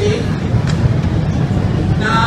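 Brief laughter over a steady low rumble.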